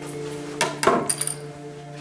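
A few short clicks and knocks, about halfway through, as the TIKO 3D printer's triangular print bed is popped off and set down on a wooden desk. Steady background music plays throughout.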